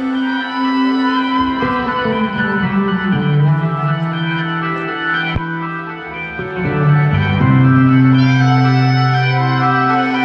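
Live concert music in an arena: sustained keyboard chords that change every couple of seconds, with a single click about halfway through.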